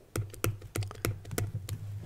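Stylus tapping and scratching on a pen tablet while handwriting, heard as a quick, irregular run of sharp clicks.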